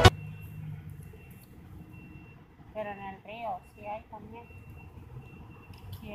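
Quiet outdoor background with a brief, faint voice about halfway through, too indistinct for words.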